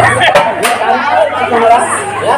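Speech: stage performers talking in Telugu through headset microphones and a loudspeaker, in a reverberant hall.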